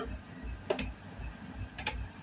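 Two computer mouse clicks about a second apart, against faint background noise.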